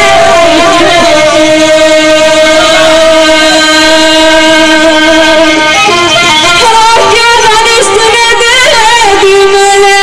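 A woman singing a Turkish folk song loudly through a microphone. She holds one long, steady note for about the first six seconds, then moves into a wavering, ornamented melody.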